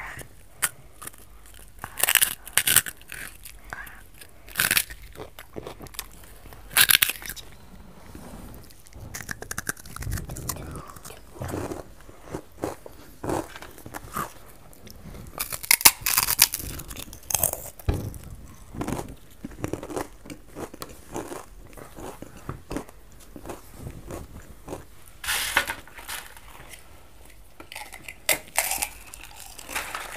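People biting into and chewing crisp puffed snacks close to the microphone: irregular loud crunches, the loudest about 2, 7 and 16 seconds in and again near the end, with quieter chewing in between.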